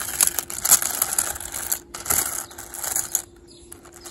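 Buttons clicking and rattling against each other and a metal tin as a hand rummages through them; the clatter stops about three seconds in.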